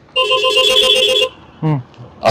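An electronic warbling tone, like a phone ringtone, sounds for about a second and then stops.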